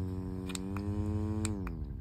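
Small battery-powered handheld mini fan's motor whirring with a steady whine. About one and a half seconds in there is a click and the whine drops in pitch as the fan changes to its other, slower speed.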